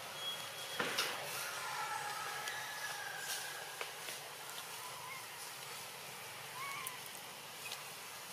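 Outdoor forest ambience: a steady hiss with a few faint short chirps and whistles, scattered light ticks, and one sharp click about a second in.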